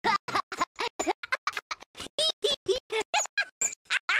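A cartoon character's singing voice and backing music cut into a rapid stutter, about eight short pieces a second with gaps between, the pitch jumping from piece to piece like record scratching.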